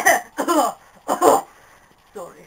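A person coughing three times in short, voiced bursts that fall in pitch, with brief pauses between them.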